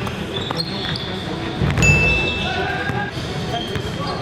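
Basketball bouncing on a hardwood gym floor while sneakers squeak during a drive to the basket. The loudest, sharpest squeal comes a bit under two seconds in, with a few shorter squeaks after it. The sound echoes in a large hall.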